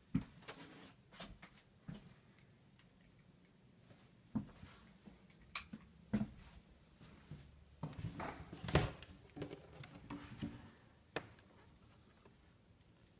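Scattered knocks, clicks and rustles of someone moving about a small room and handling closet doors, with about half a dozen sharp knocks, the loudest about nine seconds in.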